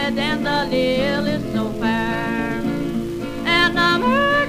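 Old-time country music from a late-1920s recording: acoustic guitar picking the melody over autoharp, with a woman singing.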